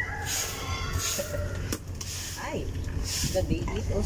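Horses chewing leafy branches, with repeated crisp crunching.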